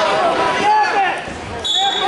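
Coaches and spectators shouting over one another during a wrestling bout in a gym, with a short high squeak near the end.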